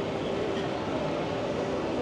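Steady street ambience on a busy pedestrian street: a continuous, even rumble and hubbub with a faint steady hum in it, and no distinct events.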